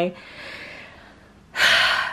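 A woman's voice trailing off into a soft breath, then a short, loud, sharp intake of breath near the end.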